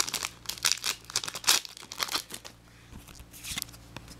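Foil trading-card booster pack wrapper crinkling as it is handled, a quick run of sharp rustles over the first two and a half seconds, then quieter.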